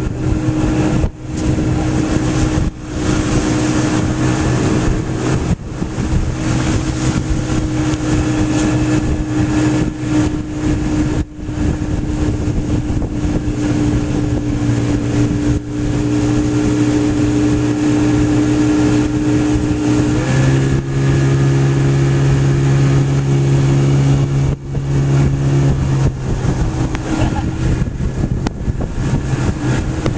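Motorboat engine running steadily at towing speed, pulling a kneeboarder. Its note steps to a slightly different pitch about two-thirds of the way through.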